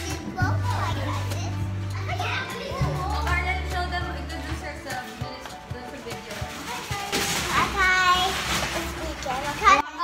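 Music with a steady bass line under children's voices calling out and chattering; the bass drops out about halfway through while the high-pitched children's voices carry on.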